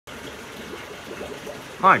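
Steady trickling and running water from a large aquarium's water flow, ending in the start of a man's greeting.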